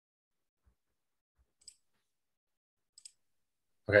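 Pen writing on paper: two faint, short scratches, one about a second and a half in and a double one about three seconds in, otherwise near quiet. A man's voice says "Okay" at the very end.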